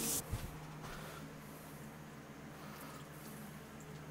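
Lacquer thinner poured from a plastic jug onto a bare steel sheet: faint, soft liquid splashing over a steady low hum. A brief rag wipe on the metal is heard at the very start.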